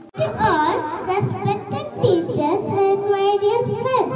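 A young girl singing into a microphone, a melody with notes held for about half a second, cut by a brief drop-out just at the start.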